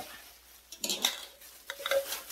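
A thin plastic shopping bag being handled and rustled, with light knocks from the items inside, in two short bursts about a second in and near the end.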